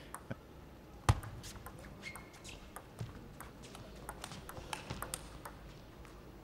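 Celluloid-type table tennis ball clicks and taps: one sharp knock about a second in, then scattered lighter taps of the ball on the table and bats, over a low hall background.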